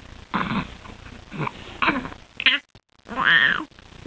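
A three-month-old baby laughing and cooing in short bursts, then one louder squeal that rises and falls in pitch about three seconds in.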